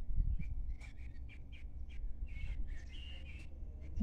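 Birds chirping outside over the low, steady rumble of a Volvo B10BLE bus's diesel engine idling while the bus stands still.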